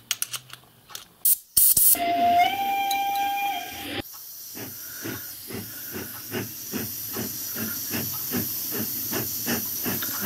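Compressed air hissing through a leaking brass steam-whistle push valve on a workshop airline. About two seconds in, a loud rush of air carries a whistling tone for some two seconds, then settles into a steady hiss with soft rapid ticks, about four a second. The air escaping past the valve is blowing a soap bubble: the valve is leaking, which the owner suspects is scale or the ball not seating.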